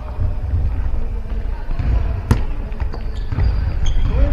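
A futsal ball struck once by a foot, a sharp thud about two seconds in that rings in a large gymnasium, over a steady low rumble.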